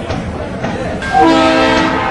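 Indian Railways passenger train running past with a steady rumble; about a second in, its horn sounds one loud, steady blast of under a second.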